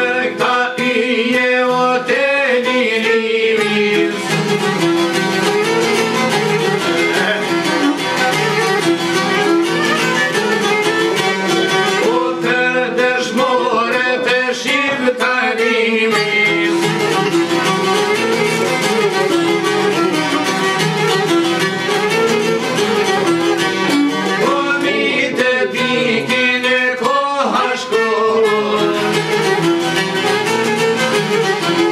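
Albanian folk music: a violin playing the melody over a plucked long-necked lute, with a man singing in parts.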